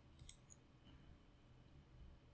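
A quick click from a computer mouse button about a quarter of a second in, then near silence: room tone.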